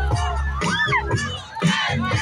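Large crowd cheering and shouting, many voices overlapping, over music with a steady bass line.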